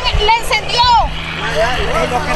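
High-pitched voices talking over a constant low rumble, and a steady low hum that sets in about a second in.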